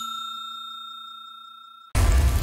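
A bell-like ding sound effect from a subscribe-button animation, ringing on and fading steadily, then cut off abruptly near the end.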